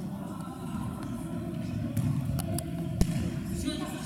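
Futsal ball being kicked on a sports-hall court: a few sharp knocks, the loudest about three seconds in, over a steady hum of players' voices in the large hall.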